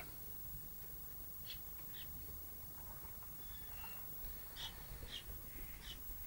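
Quiet room tone with a low steady hum and a handful of faint, short clicks.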